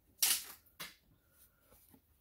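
Two short clacks of a hard plastic ATV fender being handled and turned over on a workbench. The louder one comes about a quarter second in and a smaller one just under a second in.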